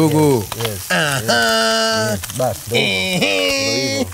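A voice drawing out long, sung-sounding notes twice, over the steady sizzle of a pan of njahi beans on a gas burner as coconut cream is poured in.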